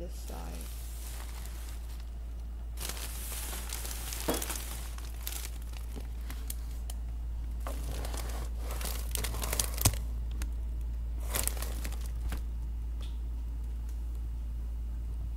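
Bursts of crinkling and rustling, like material being handled, with a few small sharp knocks, over a steady low hum.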